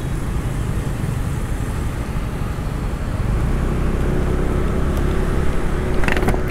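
Steady road and wind noise while riding through city traffic: a continuous low rumble of engine, tyres and wind, with a faint steady hum from a vehicle joining about halfway through.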